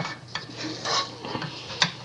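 A wooden spoon stirring and scraping thick, sticky cooked playdough dough around a saucepan, with a sharp knock near the end.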